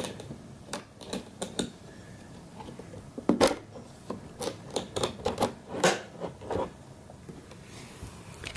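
Irregular plastic clicks and taps, a dozen or so, as hands press the release buttons and handle the lower casing of a white 2006 iMac. The sharpest clicks come about three and a half seconds in and near six seconds.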